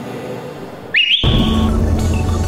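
A single sports whistle blast about a second in: a quick rise in pitch, then held briefly, as a start signal. Background music with a heavy bass comes in right after it.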